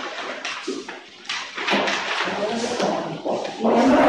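Indistinct talk of several people in a room, unclear and overlapping, with a brief lull about a second in.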